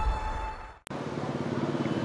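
The tail of a news-channel intro jingle fades out, then after a short cut comes roadside traffic with a vehicle engine running steadily.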